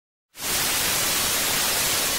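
Television static: a steady hiss of white noise that starts suddenly about a third of a second in, after a moment of silence.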